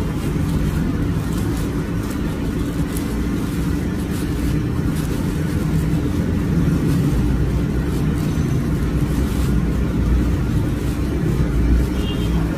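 A steady low mechanical hum, like a running motor or engine, with no change in pitch or level throughout, and occasional faint rustles on top.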